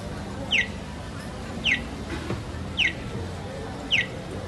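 Accessible pedestrian crossing signal on a traffic light sounding its walk chirp while the green walking figure is lit: four short, falling electronic chirps, evenly spaced about a second apart.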